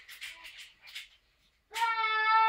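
A young boy's voice: soft breathy sounds, a brief pause, then near the end he starts to sing a long, steady high note.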